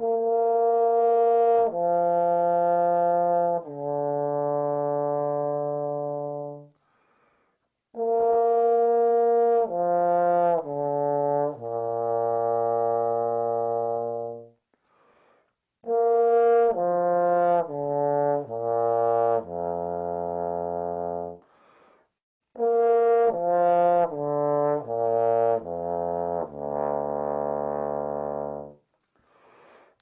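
Tenor trombone playing slurred descending B-flat major arpeggios: four phrases with short rests between, each stepping down through several notes and ending on a long held note, the later phrases reaching down into the low and pedal register. It is a warm-up for matching sound and smooth slurs across the range.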